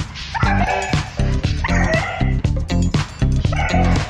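A dog whining and yipping at a glass door, three cries about a second apart, eager to be let outside. Background music with a steady beat plays throughout.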